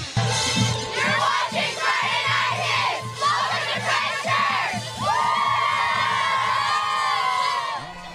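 A cheerleading squad yelling a cheer together in many overlapping voices, ending in one long held shout that breaks off near the end, over a music bed.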